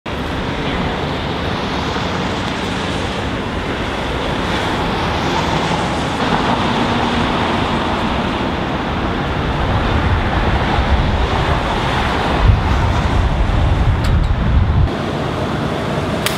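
Steady rush of street traffic with wind buffeting the microphone. A heavier low rumble builds about twelve seconds in and cuts off suddenly shortly before the end.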